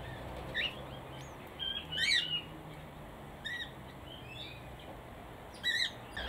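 Small birds giving short, scattered chirps, about six in all, the loudest about two seconds in, over a faint low background hum.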